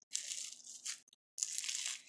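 Sticky clear slime with rice grains mixed in, stretched and squeezed between the hands: soft, wet handling sounds, cut off by a short silent gap about a second in.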